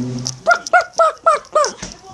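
Five quick, high-pitched yelps, about four a second, each rising and then falling in pitch.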